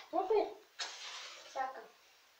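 A short spoken sound, then about a second in a match struck: a sudden sharp hiss that fades over about half a second. A brief sound from the voice follows near the end.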